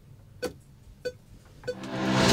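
Three short, sharp ticks about 0.6 s apart, like a count-in before a take, then the song's backing music swelling in near the end.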